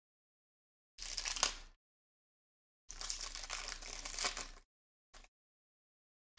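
Foil wrapper of a Panini Prizm Fast Break card pack crinkling as it is torn open and pulled off the cards, in two rustling bursts, a short one about a second in and a longer one about three seconds in, with a brief rustle near the end.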